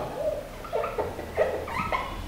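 Marker squeaking on a whiteboard in a series of short strokes as words are written.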